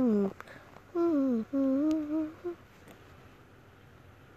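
A person humming a short wavering tune in two phrases, several notes sliding downward; the humming stops about two and a half seconds in.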